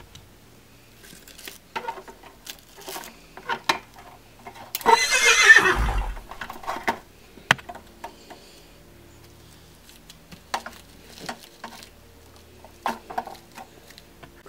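A horse neighs once, about five seconds in, for a little over a second, amid scattered light clicks and taps.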